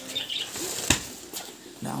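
A single sharp smack about a second in as a blow lands on a homemade punching bag wrapped in plastic, followed by a softer knock. A short laugh comes near the end.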